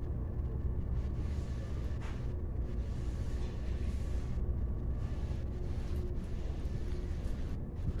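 Steady low rumble of background room noise in an office-building lobby, with a faint hum and no distinct events.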